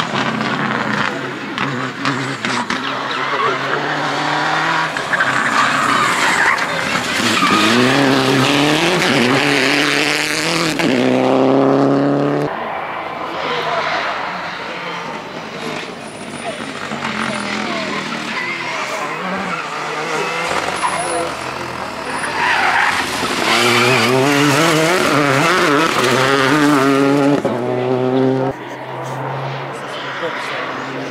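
Rally cars on a tarmac special stage, passing one after another at full throttle. Each engine revs up through the gears and ends in a sharp cut as the throttle lifts or a gear changes, once about twelve seconds in and again near the end.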